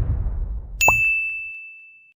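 A low rumble fades away. A little under a second in, a single bright bell ding sounds, the notification-bell sound effect of a subscribe-button animation. It rings as one steady high tone that slowly dies away.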